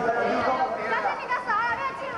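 Several voices talking and calling out over one another.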